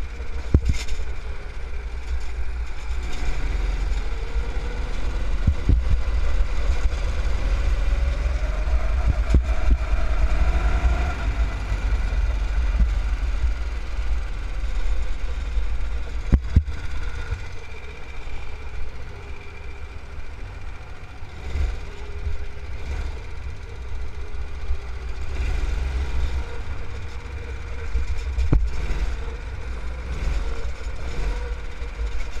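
Go-kart engine heard close up from the kart itself, its pitch rising as it accelerates and falling back as it slows for corners, over a constant heavy low rumble. A few brief knocks come through along the way.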